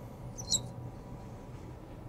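A felt marker squeaking once, briefly and high-pitched, on a glass writing board about half a second in as a number is written; otherwise faint room tone.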